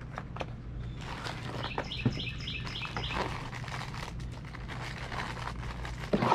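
Dry cake mix pouring from its bag into a cast iron Dutch oven, a soft rustling with a few light clicks of the bag. Partway through, a bird chirps in a quick run of about six notes.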